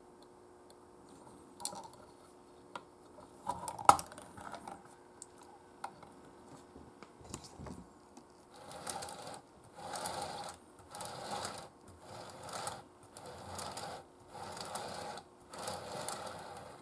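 Light clicks and one sharp knock from hands handling a die-cast metal toy figure. Then comes a run of about eight short rasping bursts in a steady rhythm.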